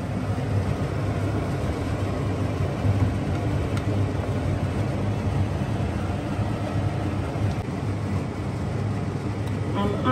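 Steady low hum of a cooker-hood extractor fan running above the stove.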